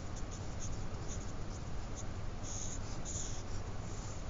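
Sharpie felt-tip marker writing a word on paper: a run of short strokes, then two longer strokes in the second half, over a steady low hum.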